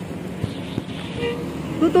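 Road traffic passing on a two-lane road, motor scooters among it: a steady rush of engines and tyres, with a short faint tone a little past a second in.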